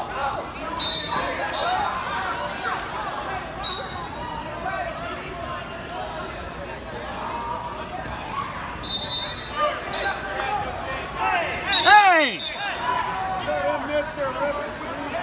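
Hubbub of many voices in a large gym hall, with short high-pitched chirps now and then and one loud voice call sliding down in pitch about twelve seconds in.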